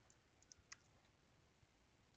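Near silence with a few faint computer mouse clicks, the clearest about three quarters of a second in.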